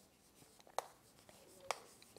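Chalk writing on a chalkboard: faint scratching strokes with two sharp taps of the chalk against the board, one a little under a second in and one near the end.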